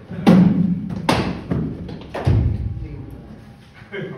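Cricket ball impacts in an indoor net hall: three loud knocks about a second apart, each ringing on in the hall's echo, the heaviest and deepest last. They are a delivery pitching on the artificial turf and being met by the bat.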